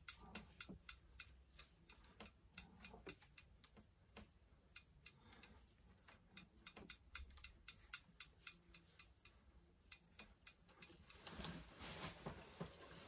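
Faint, light ticks and clicks, several a second and somewhat uneven, over a near-silent room.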